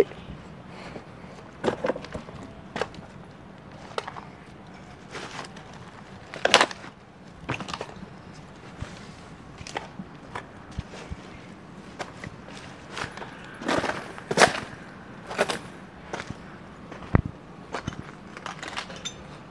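Footsteps picking over rubble and scattered debris: irregular crunches and knocks with no steady rhythm, the loudest about six and a half seconds in and a cluster of them around fourteen to fifteen seconds.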